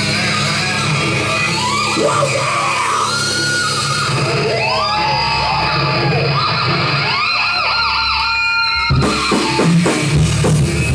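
Live heavy metal: an electric guitar lead with notes sliding up and down over a held low note, then the drums and full band come back in about a second before the end.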